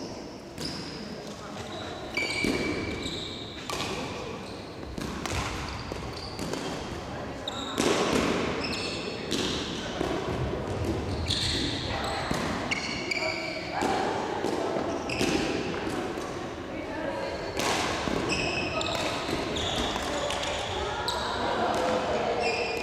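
A badminton doubles rally in a large wooden-floored sports hall: rackets repeatedly strike the shuttlecock with sharp cracks, and shoes give short high squeaks on the floor.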